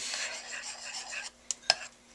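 A metal spoon stirring protein powder into cooked oats in a bowl: a scraping rub for just over a second, then two short clicks near the end.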